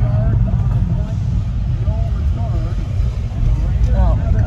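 Steady low rumble of a moving car heard from inside the cabin, with quiet talking over it.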